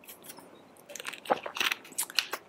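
A plastic water bottle being handled and set down, giving a quick run of crinkles and small clicks from about a second in.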